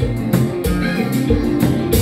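A live konpa band playing, with a drum kit keeping a steady beat of about four strokes a second under the rest of the band.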